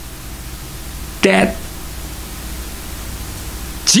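Steady hiss with a faint low hum during a pause in a man's speech. A short vocal sound from him comes a little over a second in, and his talking resumes at the very end.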